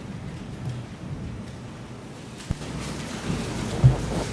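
Steady background hiss and room noise, with a single sharp click about two and a half seconds in and a short low thump just before the end.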